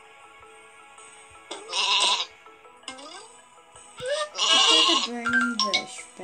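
Sheep bleating twice, about one and a half seconds in and again about four seconds in, over steady background music.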